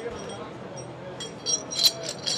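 A few light metal-on-metal clinks in the second half, the loudest near the end, as the stainless steel collar of a Mantus anchor swivel is slid by hand back over the swivel body.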